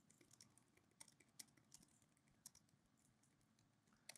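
Faint typing on a computer keyboard: a scattered run of light key clicks that stops a little past halfway.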